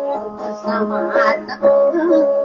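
Dayunday song: a voice singing over plucked guitar accompaniment, with sustained notes and a steady low drone underneath.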